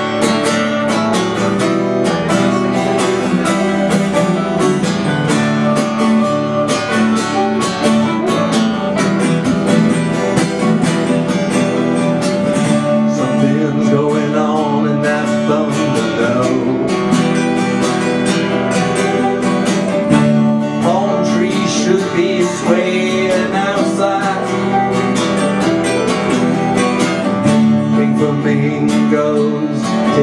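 Live acoustic band music: acoustic guitars strumming a steady rhythm, with a melody weaving over them.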